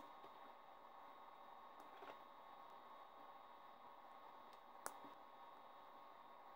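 Near silence with a couple of faint sharp snips from wire cutters clipping the excess leads of newly soldered IR LED and phototransistor components on a small circuit board. The clearest snip comes about five seconds in.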